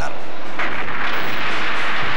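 A film explosion: a long rushing blast that starts about half a second in and runs on for about two seconds.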